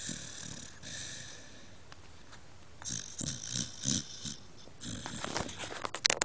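A sleeping dog snoring: three long, noisy breaths, the middle one with a quick fluttering rattle.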